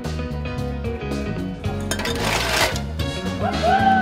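A champagne cork pops about two seconds in, followed by a short hiss of escaping gas, over background music with a steady beat.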